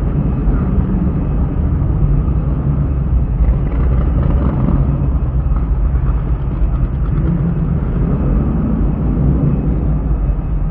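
Car engine running as the car drives slowly, a steady low rumble heard from inside the cabin.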